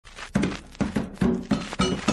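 Instrumental opening of an Umbanda ponto: an atabaque hand drum beats out a steady rhythm, and an agogô bell's ringing strokes join near the end.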